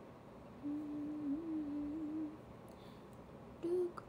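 A young woman humming a short, slightly wavering low note with her mouth closed for about a second and a half, then a second, shorter hum near the end.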